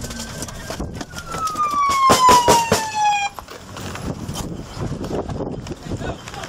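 Several close gunshots in quick succession about two seconds in, the loudest sound here, while a police siren falls steadily in pitch and dies away. Road and vehicle noise runs underneath.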